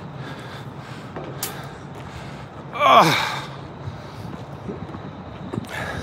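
A man lets out a sigh, one breathy vocal sound that falls in pitch, about halfway through, over a low steady hum in the background.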